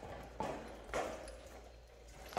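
A dog's paws and claws knocking twice on a concrete floor, about half a second apart, each knock soft and quickly fading.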